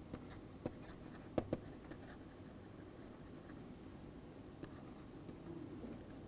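Faint tapping and scratching of a stylus writing on a tablet screen, with scattered sharp taps, the loudest a pair about a second and a half in.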